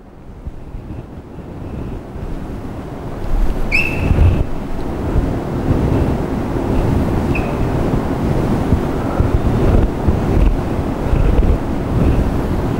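Rustling of clothing against a clip-on microphone as the arm moves to draw on a whiteboard, building up over the first few seconds, with a couple of short squeaks of a marker on the board.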